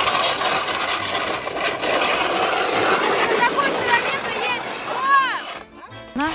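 A PVC facade panel scraping and sliding over icy, gritty asphalt under a person standing on it: a rough, steady scrape that stops suddenly about five and a half seconds in. A short rising-and-falling cry of a voice comes just before the scrape stops.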